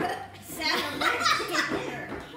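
Women's voices and laughter, in short bursts with sharp catches of breath.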